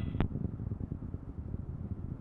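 Low, steady rumbling noise with a single sharp click about a fifth of a second in.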